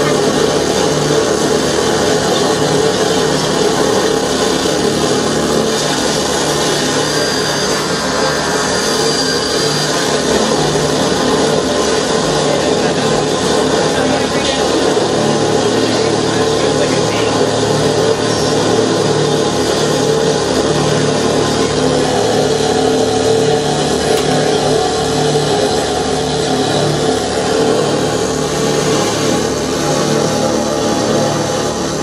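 Loud, unbroken wall of noise from a live experimental noise piece built from layered tape playback and electronics: dense, harsh texture with steady droning tones underneath, holding at one level throughout.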